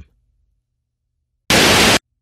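Near silence, then a loud half-second burst of TV-style static hiss near the end that cuts off abruptly: a channel-change transition effect.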